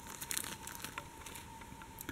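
Faint crinkling of a small plastic zip-lock bag of beads being handled, with light crackles that are densest in the first second.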